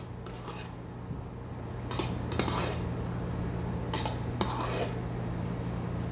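Metal spoon scraping and clinking against a stainless steel milk pitcher while scooping out steamed milk foam, in several short strokes spaced a second or two apart, over a steady low hum.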